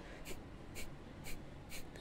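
A man's four quick, forceful exhalations through the nose, about two a second, fairly faint: Kapalbhati breathing, the yogic cleansing breath of sharp pumped out-breaths.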